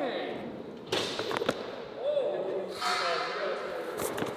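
Two sharp knocks of boards on a concrete floor, about a second and a second and a half in, followed by a short rush near the three-second mark, over distant voices echoing in a large hall.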